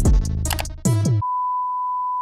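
Electronic DVD-menu music with drum-machine hits and synth notes cuts off just over half a second in. A steady, pure, high-pitched beep tone takes over and holds on one pitch.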